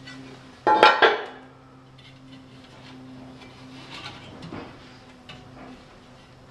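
A woodburning stove's metal baffle plate set down on the stone hearth with a sharp metallic clatter, two quick knocks about a second in. This is followed by fainter knocking and scraping as a fire brick is worked out of the firebox.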